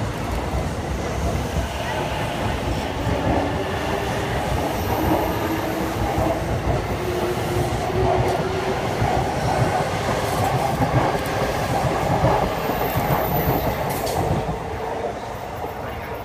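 Electric commuter trains running through the station: a steady rumble of wheels on rail with some clatter over rail joints and a faint motor whine.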